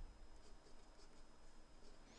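Felt-tip marker writing on paper: faint scratching strokes of the pen tip.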